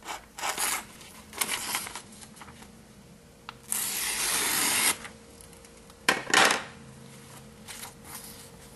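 A sheet of paper sliced with a sharp Shureido kama blade: a few short cutting strokes and one longer slice of about a second near the middle, with the paper rustling.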